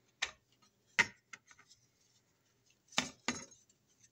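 Hard plastic clicks and taps as the plastic base of a Honeywell CT30A thermostat is handled and fitted against its wall plate: a click just after the start, a sharper one about a second in with a few faint ticks after it, and two more close together near the end.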